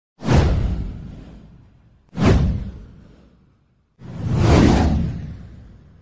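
Three whoosh sound effects for an animated title card, each a sudden rush that fades away over about a second and a half. The third swells in more gradually and peaks about half a second after it starts.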